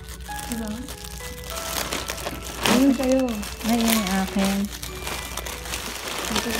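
Thin plastic mailer bags and plastic packaging crinkling and rustling as hands pull at them, with a few sharper crackles.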